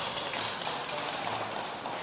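Scattered light taps and clicks of orchestra players handling sheet music and music stands, over the hall's room noise with faint murmured voices.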